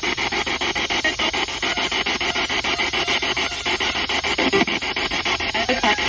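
Spirit box radio sweeping rapidly through stations, played through a small external speaker: steady chopped static and broadcast fragments at about ten cuts a second, which is how the device is meant to pick up supposed spirit voices.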